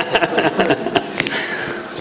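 A man laughing in breathy, uneven bursts.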